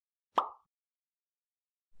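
A single short plop-like transition sound effect about half a second in: a sharp click with a brief tail, over in a fraction of a second.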